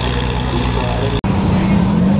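Car engines running at low revs with crowd chatter around them; the sound drops out for an instant just over a second in.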